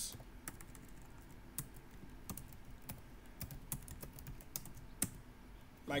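Typing on a computer keyboard: light, irregularly spaced keystroke clicks.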